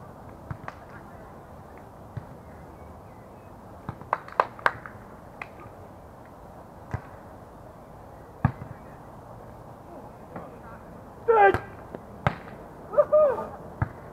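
Beach volleyball being played: sharp slaps of hands and forearms striking the ball, with a quick run of several hits about four seconds in and single hits scattered through the rest. Near the end there are two short, loud shouts from players.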